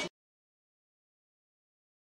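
Dead digital silence: the voices and crowd noise cut off abruptly at the very start, and nothing at all follows.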